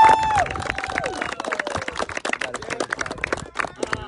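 A small group of people clapping, with a loud high 'woo' cheer at the very start; the clapping carries on more quietly after the first half second.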